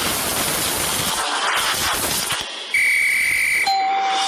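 Cartoon soundtrack: a dense, noisy rush of action sound effects, then a steady high electronic tone lasting about a second, followed right after by a lower steady tone.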